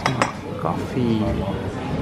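Crockery clinking on a café table, two sharp clinks right at the start, with voices in the background.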